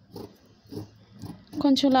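Scissors cutting through cotton blouse fabric, a couple of soft snips, then a woman's voice comes in loudly about one and a half seconds in with a long drawn-out word.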